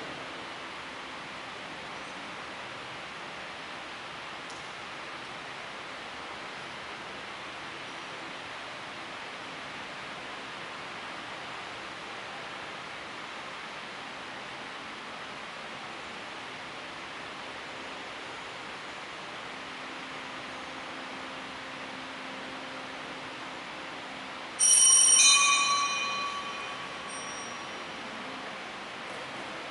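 Steady hiss of room noise; about 25 seconds in, a small bell rings sharply once with several bright high ringing tones that fade over about two seconds.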